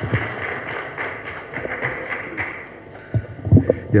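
Audience applauding, fading after about two and a half seconds, then a few thumps from a microphone being handled near the end.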